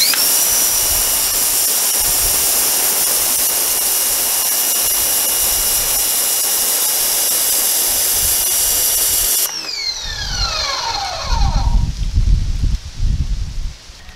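Electric pressure washer running with its zero-degree jet hissing onto concrete: the motor and pump start suddenly and spin up to a steady high whine. About nine and a half seconds in, the trigger is released and the whine falls away, followed by low rumbling near the end.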